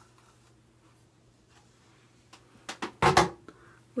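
Faint strokes of a plastic detangling brush through hair, then a few clicks and a short, loud scuffling burst about three seconds in.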